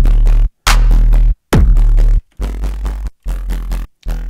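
A riddim dubstep bass patch in the Serum synthesizer plays three loud short notes, each opening with a fast falling pitch sweep into heavy sub bass, with brief silences between them, then two quieter held notes. It runs through a diode distortion whose drive is swept by an LFO, crunching it up a lot.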